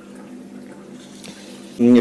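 Faint, steady water sound from an Aquael PAT Mini internal aquarium filter running submerged, as it is lowered deeper to aerate the water. A man's voice begins near the end.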